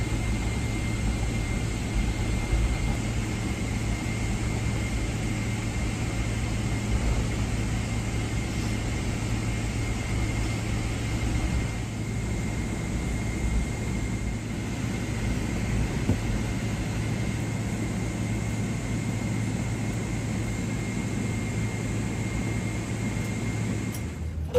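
Cabin noise of a Boeing 777-300ER taxiing after landing: a steady low rumble and hiss from the engines at idle and the airflow, with a faint steady high whine running through it.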